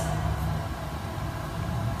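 Steady low hum with faint hiss: background room tone, with no cup sounds or other events.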